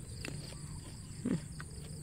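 Garden ambience of insects, likely crickets, keeping up a steady high-pitched chirring, over a low steady hum. There are a few faint clicks, and a short low sound that falls in pitch a little over a second in.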